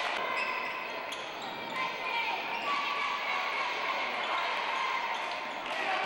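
A basketball being dribbled on a hardwood gym floor during live play, with voices in the background.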